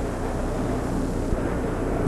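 A pack of NASCAR stock cars running at speed, their V8 engines blending into one steady engine noise with no single clear pitch.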